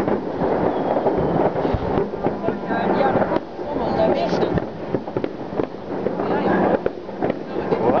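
Many fireworks going off across a town at once: a continuous, dense crackle of pops and bangs, with voices in the background.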